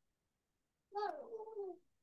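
A cat meowing once, about a second in: a short call under a second long that falls in pitch.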